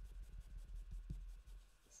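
Ink blending brush rubbed in quick small strokes over cardstock, inking the edges of a card panel: a soft, continuous scratchy rubbing.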